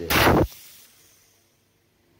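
Compressed air blasting out as a brass quick-connect coupler is pulled off an air compressor's filter-regulator (air dryer): a loud half-second burst, then a hiss fading away over about a second. This is the air's escape when the line is opened at the air dryer end, which the air dryer slows.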